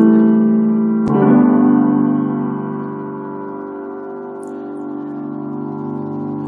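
Piano playing the closing chords of a slow ballad: a held chord, then a last chord struck about a second in and left to ring out, slowly fading.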